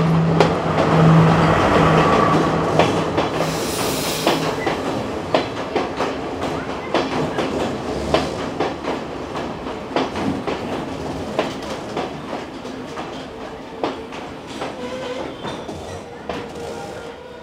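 Diesel passenger train pulling into a station and slowing to a stop: a low engine hum fades within the first few seconds while the wheels clack irregularly over the rail joints, with a brief hiss about four seconds in. The clacking thins out and the whole sound grows quieter as the train comes to rest.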